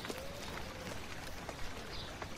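Quiet outdoor background: a faint, steady hiss with a couple of soft, faint tones and small clicks.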